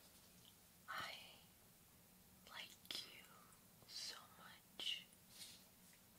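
Soft close-up whispering: a few short breathy phrases with pauses between them, and a couple of faint clicks.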